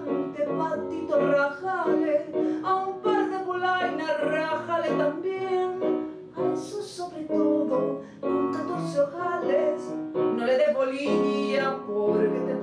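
A woman singing a tango into a microphone over instrumental accompaniment, her voice carrying a flowing melody with sharp sibilant consonants.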